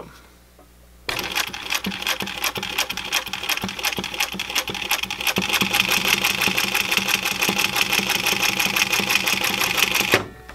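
Singer 111W101 industrial walking-foot sewing machine, driven by a servo motor, stitching through denim at six stitches per inch. It starts about a second in and runs as a fast, steady mechanical clatter, then stops abruptly near the end.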